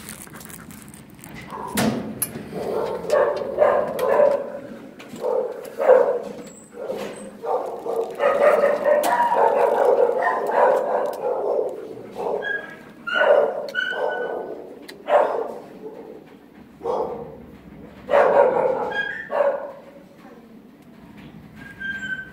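Shelter dogs barking in short, repeated barks, with a few higher yips or whines mixed in. The barking is densest from about eight to eleven seconds in.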